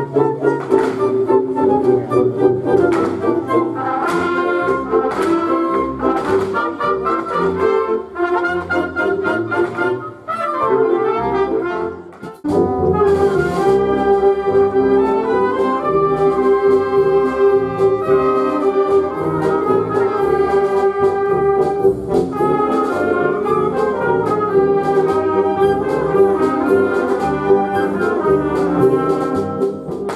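Wind band playing live, brass over clarinets and saxophones: a rhythmic passage with regular accented beats, then an abrupt change about twelve seconds in to long sustained chords.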